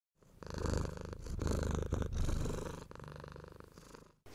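A cat purring, a fast fine pulsing that swells and eases in slow waves and fades away near the end.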